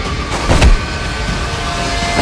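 Heavy steady vehicle-like rumble on an action trailer's sound track, with a loud sweeping whoosh about half a second in.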